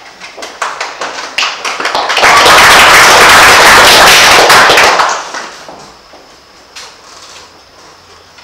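Audience applauding: a few scattered claps at first, then full applause for about three seconds that dies away.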